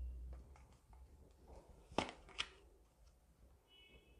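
Tarot cards being handled: two sharp clicks about half a second apart near the middle as a card is drawn and snapped from the deck, with fainter card-handling ticks around them.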